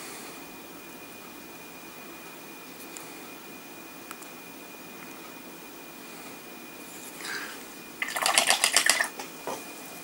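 Faint room tone with a thin steady high whine. About eight seconds in comes a loud burst of rapid clicking rattles, lasting about a second.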